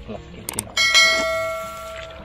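Two quick click sound effects, then a bright bell ding that rings and fades away over about a second: the notification-bell sound of a subscribe-button animation.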